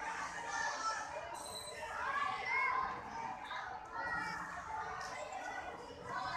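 Many children's voices chattering and calling out, overlapping into a continuous hubbub.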